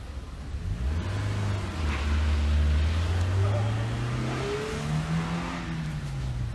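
A motor vehicle's engine accelerating on the street, its pitch climbing steadily over several seconds and loudest a couple of seconds in.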